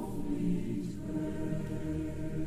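Slow choral music, voices holding sustained chords that change about half a second in.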